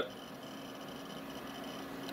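Faint room tone: a steady low hum under an even hiss, with no distinct event.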